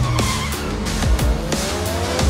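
Action-trailer soundtrack: music mixed with vehicle-chase sound effects, tyres squealing and an engine rising in pitch near the end.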